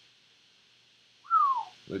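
Near silence, then about a second in a man whistles one short falling note that slides down over about half a second, like a dive.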